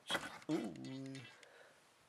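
Only speech: a man's drawn-out "ooh" exclamation, falling in pitch and then held for about a second.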